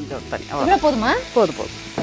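A person's voice speaking over vegetables sizzling in a frying pan as water is added and stirred in with a wooden spatula.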